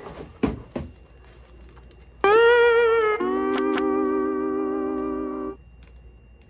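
A couple of light knocks in the first second, then a short musical sting of two held notes falling in pitch, the first wavering and the second lower and held for about two seconds before cutting off: a comic letdown sound effect.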